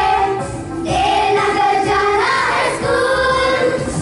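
A group of school children singing together in unison, long held notes moving from one to the next.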